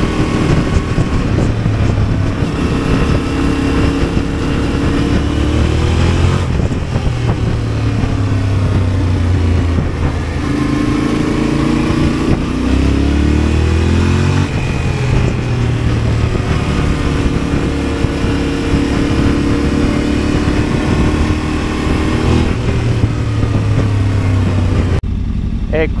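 Yamaha motorcycle engine heard from the rider's seat while riding, under constant wind noise. Its pitch rises several times as it accelerates and falls back as the throttle closes for the bends.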